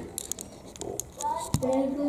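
Quiet indoor room sound with a few faint clicks, then a higher-pitched voice starts talking a little past halfway, with one sharp click just after.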